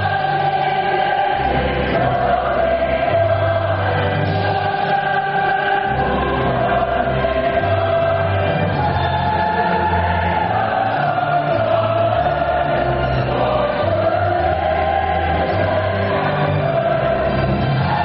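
Choral music: a choir singing a slow, sustained melody over long-held low bass notes.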